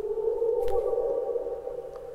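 A sustained low electronic drone, like a synthesizer pad, swells in and then slowly fades out, with a faint higher tone joining it about a second in.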